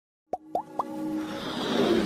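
Intro animation sound effects: three quick pops, each gliding upward in pitch, about a quarter second apart, then music building up in a rising swell.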